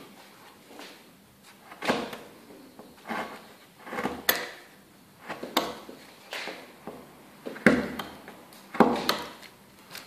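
Hand chisel paring soft wood pulp carving on a picture frame's ornaments: short scraping cuts, roughly one a second, a few ending in a sharp click.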